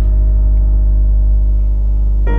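Ambient background music: a held keyboard chord ringing on over a steady low drone, with no new note struck.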